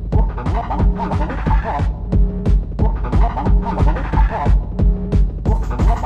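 Electronic dance music from a live set: a steady, driving kick drum under sustained synth tones, with a brighter melodic figure coming back every few seconds.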